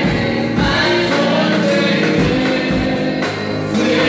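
Live gospel worship song: women singing into microphones, a lead voice with backing singers, over a band with a steady beat.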